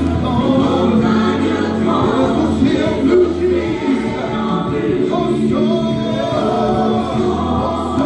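Church congregation singing a gospel worship song together, many voices at a steady, full level.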